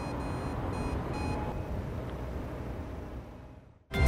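City street ambience: a steady low traffic rumble with four short, high electronic beeps in the first second and a half. The sound fades out just before the end.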